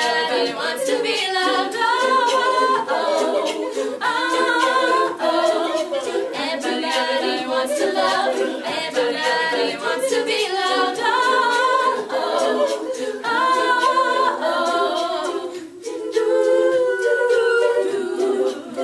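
Women's a cappella group singing in harmony, several voices with no instruments. The voices drop out briefly near the end, then come back in.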